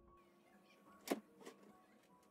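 Two sharp knocks from household things being handled: a loud one about a second in and a smaller one half a second later, over quiet background music.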